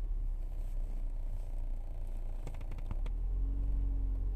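Steady low rumble inside a car cabin, with a quick run of small clicks about two and a half seconds in.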